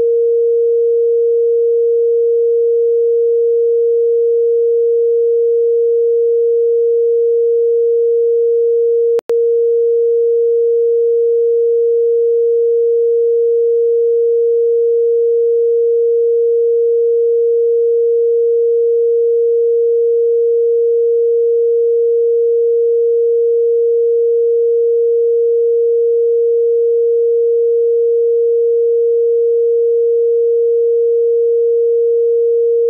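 A loud, steady electronic tone at one pure pitch a little below 500 Hz, cut off for an instant about nine seconds in and then resuming unchanged.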